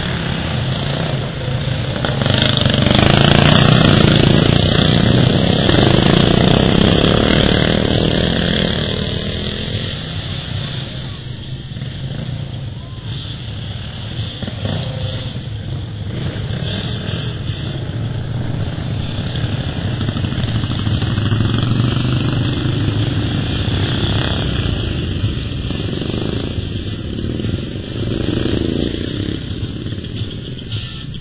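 Racing lawn mower engines running hard as the mowers lap a dirt track, loudest as they pass close a couple of seconds in, then fading and swelling again with later passes.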